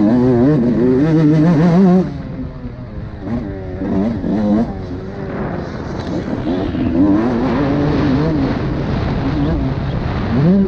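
Two-stroke motocross bike engine, a Suzuki RM 125, revving hard on the track. Its pitch rises and falls as the throttle is worked. It is loudest for the first two seconds, drops as the throttle shuts, picks up again around four seconds, and holds steadier later, with wind rush on the mic throughout.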